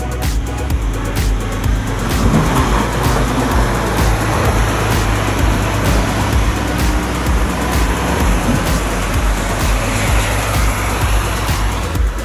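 Electronic music with a steady beat, mixed with the engine and tyres of a Mitsubishi four-wheel drive climbing a rutted dirt track. The vehicle noise swells through the middle and eases near the end.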